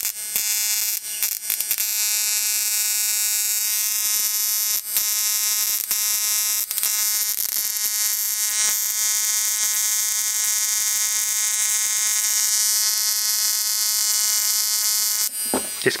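Flyback transformer on a 555-timer ignition-coil driver running with a steady high-pitched buzz and a hiss of corona discharge at its high-voltage lead, with a few faint snaps. It cuts off suddenly near the end as the power is disconnected.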